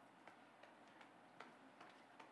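Near silence: quiet room tone with a handful of faint, irregular clicks.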